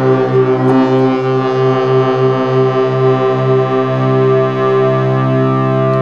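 Vintage Moog analog synthesizer holding a sustained, buzzy note with its filter open and a dense set of overtones. The low note flutters rapidly for the first couple of seconds, then settles into a steady hold.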